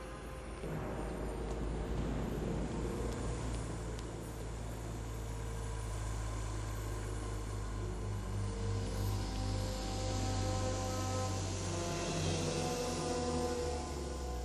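Orchestral film score with sustained low notes and held chords. A rushing hiss swells over it in the last few seconds.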